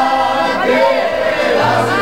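A group of men singing together in chorus, accompanied by an accordion.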